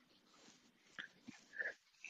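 Near silence with faint room hiss, broken by a few brief, quiet mouth clicks and a short breath in the second half, just before speech resumes.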